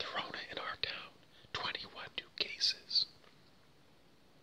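A man whispering, then quiet from about three seconds in.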